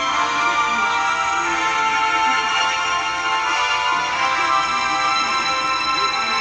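Music playing steadily from a television's speakers.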